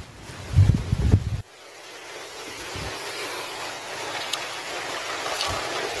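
Wind buffeting the microphone in gusts for about a second and a half, stopping abruptly. It gives way to a steady hiss of wind that grows gradually louder.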